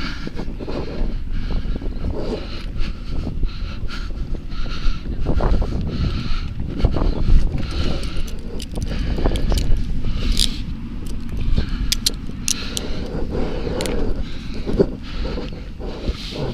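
Clothing rubbing and brushing against a body-worn camera's microphone, a low rumble with scattered clicks and knocks as the officer handles a person at close quarters.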